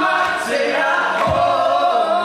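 Several voices, a woman's and men's, singing held chords in close harmony, with a single low thump about halfway through.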